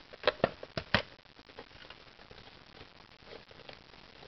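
A few sharp clicks of plastic and metal in the first second, then faint handling noise: a screwdriver working the battery-cover screw out of a plastic Nerf Barricade RV-10 blaster.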